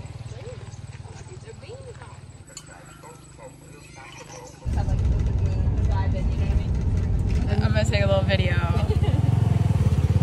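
Quiet outdoor background with a low hum, then, about halfway in, the engine of a motorbike-pulled tuk-tuk cuts in suddenly and runs loudly and steadily, with voices over it near the end.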